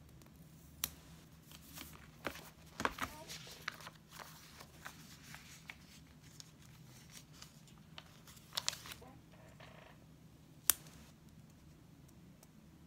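Paper and sticker handling on a spiral-bound planner: rustling of pages and sticker sheets with scattered sharp clicks and taps, a cluster of them about three seconds in and one single sharp click near the end, over a steady low hum.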